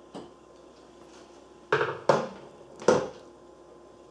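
Hard plastic knocking on a wooden tabletop as a drone's remote controller is set down and handled: a faint click, then three sharp knocks within about a second.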